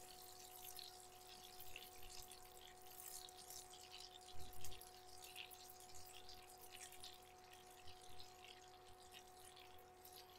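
Faint sizzle and crackle of butter melting in a nonstick skillet on a portable induction cooktop, over a steady faint hum. A couple of soft knocks about four and a half seconds in.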